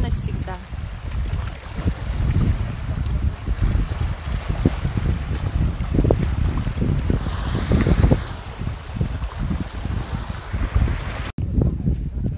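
Gusting wind buffeting the microphone with a low rumble, over small sea waves washing against a rocky shore. The sound breaks off for an instant near the end.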